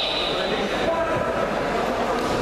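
Spectators in a large, echoing sports hall: a steady din of many voices and shouts, with a high steady tone like a whistle fading out after about a second.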